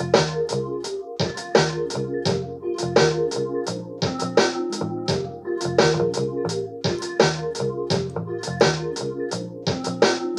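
A software-made beat playing back at 85 bpm: a drum machine pattern with crisp hits several times a second, a bass line from a software bass instrument stepping through its notes, and steady held notes in the middle range.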